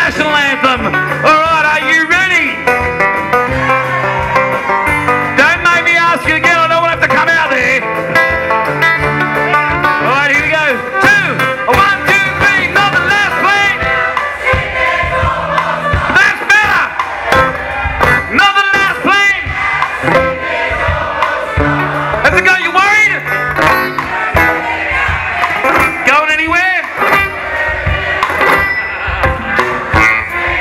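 Live band playing an up-tempo Australian rock song with drums, electric guitar, acoustic guitar, banjo and fiddle.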